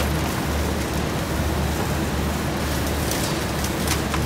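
Walk-in refrigerated cooler's fans running: a steady rushing noise over a constant low hum.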